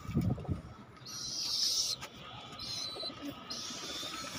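Domestic pigeon cooing low in the first half-second, followed by three short bursts of rustling hiss.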